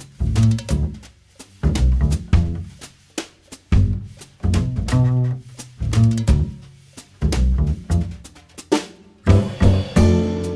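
Instrumental opening of a Brazilian MPB song: deep bass notes and drum and percussion hits played in short punchy phrases separated by brief gaps, with no singing yet. Near the end the band comes in with a fuller, sustained sound.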